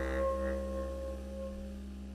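A jazz ensemble holding a final chord that slowly fades away at the end of a piece: sustained saxophone and other horn tones over a low bass note, dying out.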